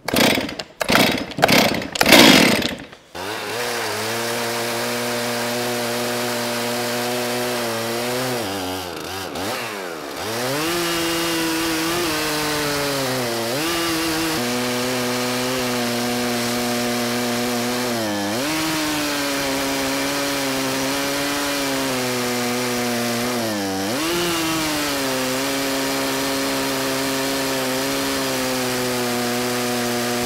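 Stihl MS 441 two-stroke chainsaw mounted in an Alaskan-style chainsaw mill, started with a few uneven bursts and then running steadily at full throttle as the chain rips lengthwise through a log. Its pitch sags briefly several times as the cut loads the engine.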